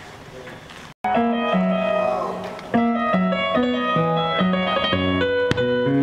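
Faint room noise, then after a sudden cut about a second in, an electronic keyboard playing held chords over a stepping bass line.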